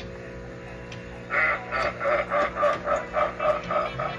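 Steady background music, then about a second in a loud rapid run of short repeated calls, about four a second, that carries on to the end.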